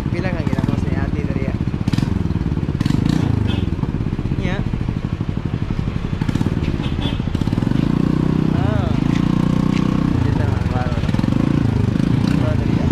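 Motorcycle engine running under way, its pitch falling and rising several times with the throttle.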